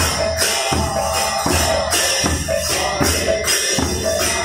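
Devotional kirtan music: a two-headed barrel drum (khol/mridanga) beaten in a steady rhythm, with continuous jangling clashes of hand cymbals over it.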